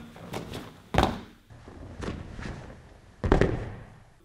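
Bare feet thudding onto foam training mats as a martial artist lands jump-spin kicks. Two loud thuds come about one second and about three seconds in, each with a short echo, and lighter foot thumps fall between them.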